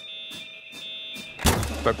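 Dial-up modem connecting: high steady tones with a fluttering, scrambled pattern of the handshake, cutting off about a second and a half in.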